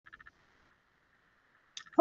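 Very quiet room with a few faint quick clicks at the very start and a faint steady high hum, then a brief mouth sound just before speech begins.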